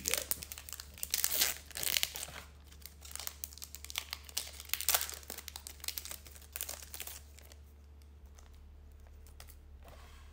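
Foil wrapper of a Topps Gallery baseball card pack being torn open and crinkled by hand, in a run of sharp crackles that dies away about seven and a half seconds in.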